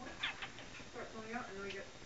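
Domestic tabby cat giving a short meow about a second in.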